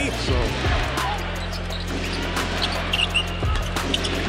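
Basketball dribbled repeatedly on a hardwood arena court, with arena crowd noise, over background music with a steady bass line.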